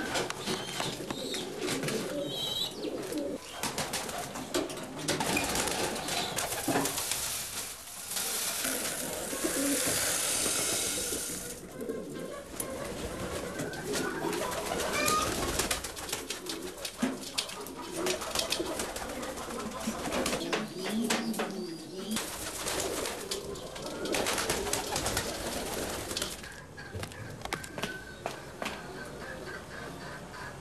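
Pigeons cooing over and over in an enclosed coop, with scattered clicks of movement. A stretch of hiss comes about nine to eleven seconds in.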